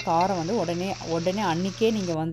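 Greens frying in a pan with a steady sizzle as they are stirred with a steel spoon, under a woman's voice talking.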